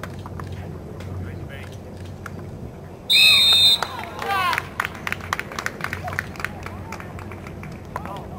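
A referee's whistle blown once, a loud shrill blast lasting under a second, about three seconds in, followed at once by shouting voices. Scattered sharp clacks and calls from the players run through the rest.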